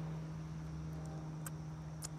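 A pause in speech filled by a steady low hum and faint background noise, with one faint click about one and a half seconds in.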